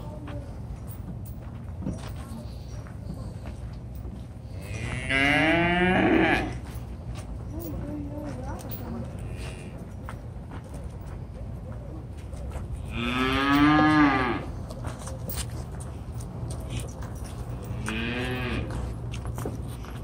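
Cattle mooing: three long, pitch-bending moos, the loudest about halfway through and a shorter one near the end.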